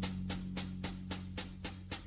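Jazz recording: the drums keep a steady cymbal beat of about four strokes a second under a held low note that fades away.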